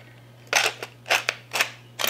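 Wooden salt grinder twisted by hand, grinding salt in several short bursts about half a second apart.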